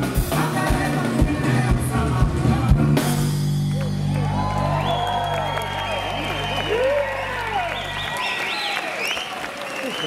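Live band with drums and bass guitar playing the last bars of a song, then holding a final chord for several seconds while the audience cheers and whistles. The chord cuts off about eight seconds in, leaving the cheering.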